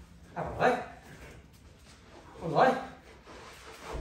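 Two short, loud male shouts, about half a second and about two and a half seconds in, as a heavy atlas stone is lifted off the floor.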